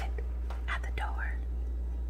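A short whispered phrase about half a second in, over a steady low hum.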